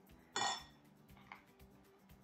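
A metal spoon set down against a glass mixing bowl: one ringing clink about half a second in, then a fainter tap.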